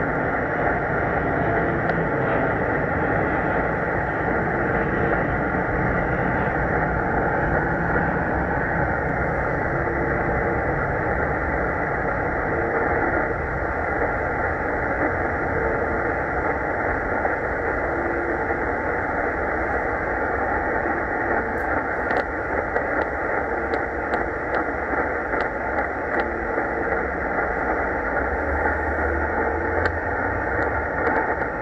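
Shortwave static on 4625 kHz from a Tecsun S-2200x receiver's speaker: a steady hiss filling a narrow band, with the UVB-76 'Buzzer' station faintly buried in the noise floor. A few faint crackles come in the second half.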